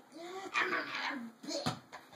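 A child's high voice in a sing-song, gliding vocalization, then a single sharp hand clap near the end.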